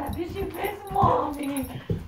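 A German Shepherd whining and grumbling in a wavering, voice-like run of sounds while being hugged and petted, an excited greeting.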